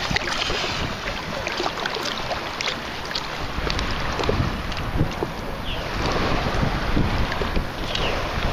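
Shallow seawater sloshing and splashing around a sand scoop being worked in the water, with wind on the microphone and a few light knocks.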